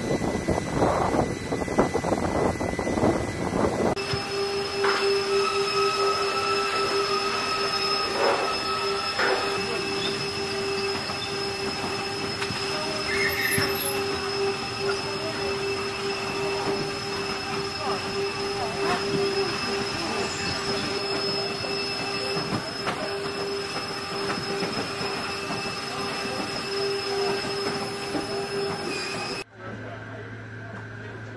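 Wind buffeting the microphone for the first few seconds. Then a steady high-pitched whine from a parked cargo jet's onboard equipment, heard from inside its cargo hold, with a few knocks about 8 and 9 seconds in.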